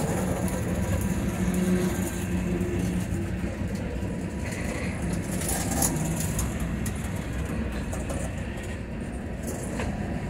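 Freight train tank cars rolling past, a steady rumble of steel wheels on rail with a few sharp clicks over it.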